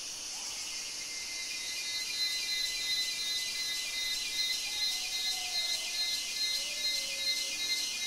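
Rainforest insect chorus: a steady high-pitched drone with a call pulsing about twice a second, and a few faint, gliding whistled notes about five to seven seconds in.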